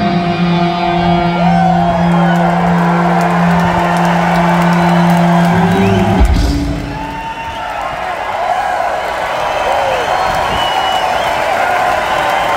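A rock band's final held electric guitar and bass chord ringing steadily, cut off by a closing low hit about six seconds in. Then a concert crowd cheering and whooping.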